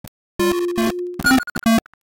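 Computer-generated synthesizer notes, each set off when a bouncing object strikes a side. A held mid-pitched tone with a lower note under it starts about half a second in, followed by several short blips and clicks, then stops just before the end.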